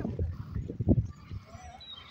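Small dog lapping water from a bowl: a quick run of short laps in the first second or so, then it goes quiet.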